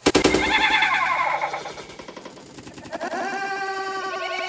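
A stick whacking a paper piñata, one sharp hit at the start, followed by excited, high-pitched voices calling out.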